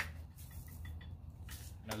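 Faint rattle of dry barbecue rub being shaken from a shaker jar onto mayonnaise, over a low steady room hum.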